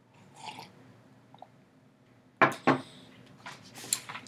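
A person sipping from a ceramic mug, a soft slurp about half a second in, followed by a few sharp knocks about two and a half seconds in.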